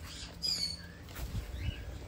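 A bird's short, falling high chirp about half a second in, then a fainter call later, over soft low thuds.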